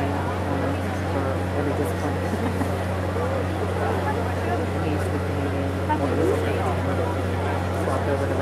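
Spectators chattering in the stands, several voices at once but no clear words, over a steady low hum.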